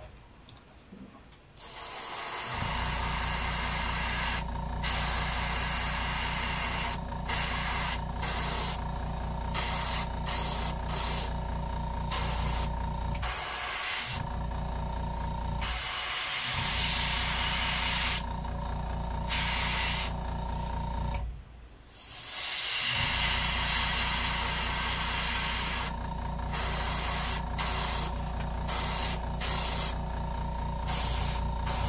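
Airbrush spraying paint in on-and-off bursts of hissing air as the trigger is pressed and released. The spray stops for a couple of seconds right at the start and again about two-thirds through.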